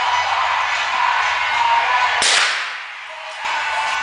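A single sharp gunshot crack about two seconds in, a .22 LR CBC Standard round, with a short ringing tail. Loud car-stereo music plays underneath.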